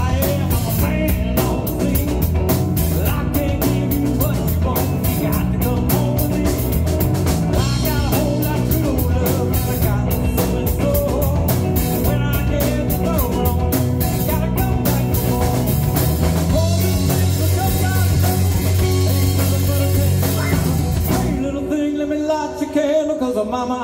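Live rock band playing an instrumental jam on electric guitars, electric bass and drum kit. Near the end the drums stop and the bass drops out, leaving the guitar ringing.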